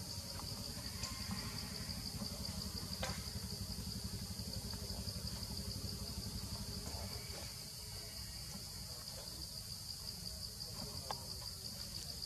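Steady, unbroken drone of forest insects, a single high whine holding one pitch, with a low rumble underneath and a couple of faint clicks, about three seconds in and near the end.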